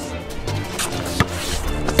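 Background music with low bass notes, and a single sharp knock a little past halfway.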